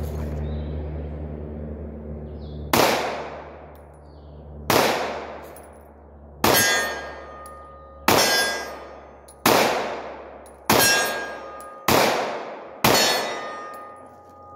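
Eight shots from a .45 ACP 1911 pistol. They come about two seconds apart at first and close to about one second apart, each a sharp crack with a fading echo. A metallic ring hangs on after several of the later shots, and a low hum stops at the first shot.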